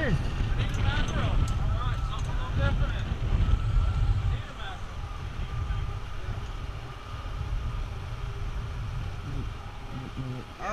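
Wind buffeting the microphone on an open boat: an uneven low rumble that eases about four seconds in. Faint voices can be heard under it.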